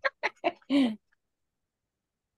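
A person laughing in a run of short, quick bursts, the last one longer and falling in pitch, stopping about a second in.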